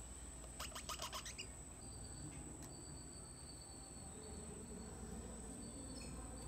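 Faint outdoor birds and insects: a quick run of about six chirps about a second in, then a thin high insect tone that comes and goes.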